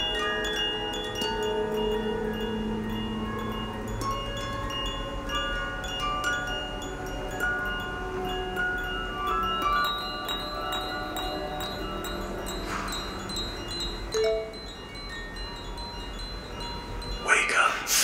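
Horror-film soundtrack of chime-like ringing notes, struck at different pitches and left to ring and overlap. Just before the end comes a sudden, loud noisy hit.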